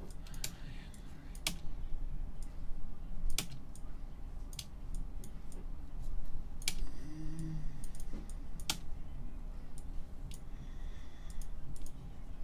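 Computer keyboard and mouse clicks: scattered sharp taps at irregular intervals, over a low steady hum.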